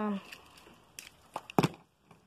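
A die-cast toy car being handled: a few light clicks, then a sharper knock about one and a half seconds in as it is set down on the mat.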